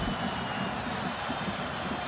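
Steady, even crowd noise from a large stadium crowd at a football match.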